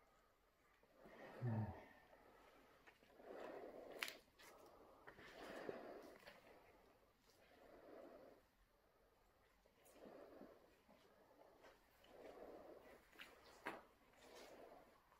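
Faint, slow breathing that repeats about every two seconds in a quiet, echoey room, with a few sharp clicks.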